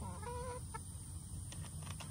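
Domestic hens clucking: a short pitched call in the first half-second, then quieter.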